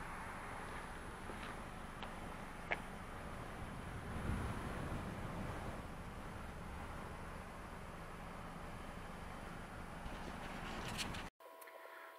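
Steady outdoor background noise with a low rumble, swelling briefly about four seconds in, and a single sharp click a little under three seconds in; it cuts off suddenly near the end.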